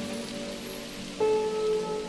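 Soft, slow piano music over a steady hiss of rain, a new held note entering about a second in.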